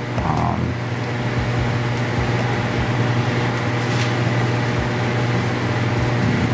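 Steady mechanical hum with a low drone, like running ventilation or air-conditioning machinery, with a faint click about four seconds in.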